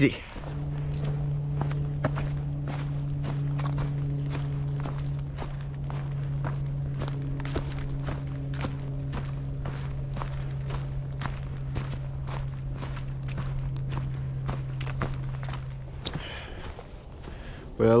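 Hiker's footsteps crunching through dry fallen leaves on a forest trail at an unhurried pace, about two steps a second. A steady low hum runs underneath and stops about two seconds before the end.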